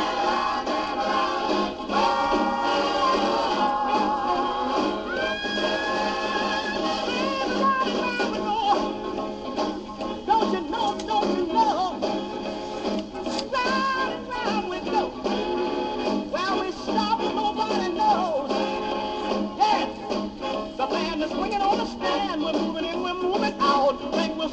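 A 1960s rhythm-and-blues record playing from a 7-inch single on a turntable, with a driving beat and singing. The sound is thin, with little bass.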